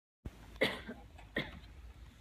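Two short coughs, a little under a second apart, over a low room hum.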